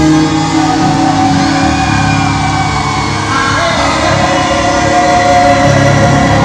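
Live Christian music: male voices singing long held notes over a band accompaniment.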